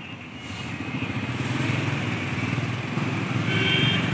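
Motorcycle engine passing close by on the road, growing louder from about half a second in, with a short vehicle-horn toot near the end.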